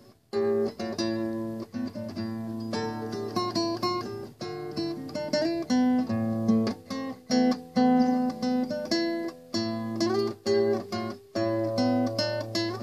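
Solo classical guitar played fingerstyle: a slow run of plucked single notes and chords that let ring, grouped in phrases with brief pauses between them.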